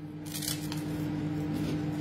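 A person biting and chewing food close to the microphone: soft crunching and mouth noises, over a steady low hum.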